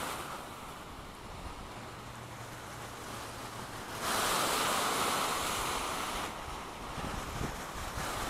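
Lake surf washing on the beach, with wind on the microphone; the rush swells louder for about two seconds midway, then eases.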